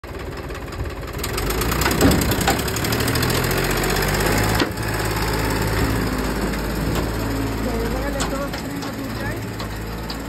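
Farmtrac Champion tractor's diesel engine working under load, pulling an empty steel trolley up out of a loose sand pit. The engine note rises about a second in and then holds steady, with a sharp knock near two seconds.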